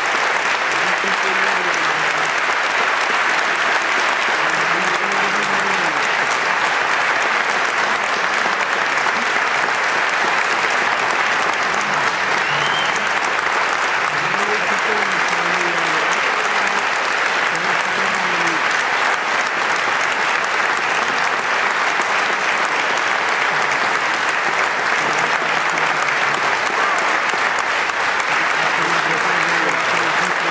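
Concert audience applauding steadily, with a few voices heard through the clapping.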